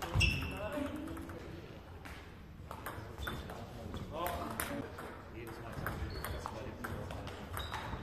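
Table tennis ball ticking off bats and the table at irregular intervals during rallies. A voice calls out just after the start and voices are heard again about four seconds in.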